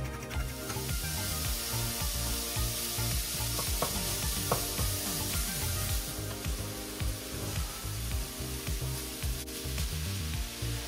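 Ground meat sizzling as it fries in a nonstick pan, stirred and broken up with a spatula, with light scraping from the stirring. A soft background music track runs underneath.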